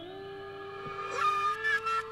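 Film-score music: a held chord of steady tones, with a flurry of quick, high fluttering notes coming in about a second in.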